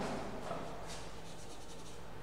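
Faint scraping and rubbing on a chalkboard, a few light scratchy strokes strongest a little after a second in.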